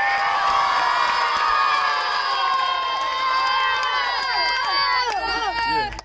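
Crowd of young men and boys cheering and shouting together, many voices in long held calls that break into shorter falling ones and die away near the end.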